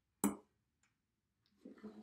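A single sharp tap on the wooden table a quarter second in, then a faint tick, and near the end a short murmur of a voice.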